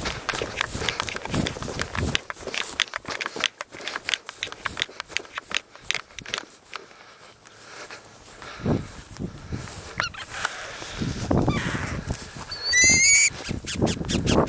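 Footsteps and rustling through dry grass, with a quieter stretch midway. Near the end comes a short, loud, harsh animal squawk in quick stepped notes.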